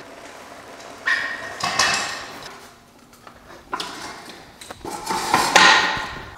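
A Kawasaki KX100 dirt bike being wheeled across a garage floor and set up on a metal stand: several separate knocks, clunks and scrapes.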